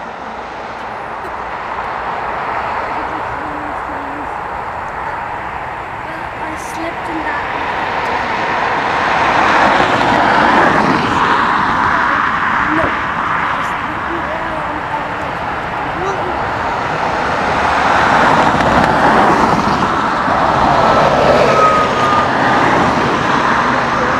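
Jet engines of a taxiing Airbus A319-112 (CFM56-5B turbofans) running at low thrust, a steady rushing hum that swells about nine seconds in and again near the end as the aircraft comes closer.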